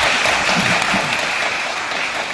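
Studio audience applauding: steady clapping that eases off slightly toward the end.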